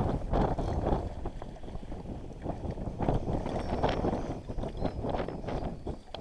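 Wind rumbling on the microphone, with a hooked mullet splashing and thrashing at the water's surface as it is played in close.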